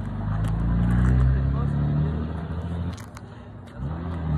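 A motor engine's low drone, rising in pitch over the first second, holding steady, then dropping away briefly near the end, with a couple of sharp knocks.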